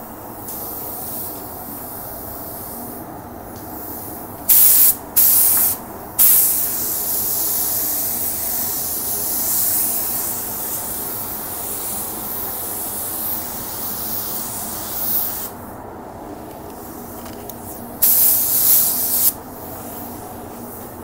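Gravity-feed automotive paint spray gun spraying a coat of paint onto a car fender: two short hissing blasts about five seconds in, then one long pass of about nine seconds, and another short blast near the end. A steady background hum runs underneath.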